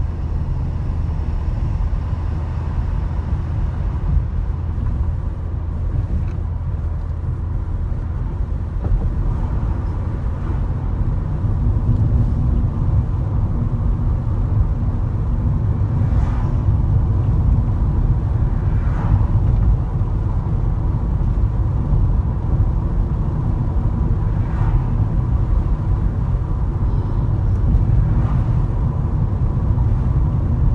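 Car cabin noise while driving: a steady low rumble of engine and tyres on the road, which grows louder about a third of the way through.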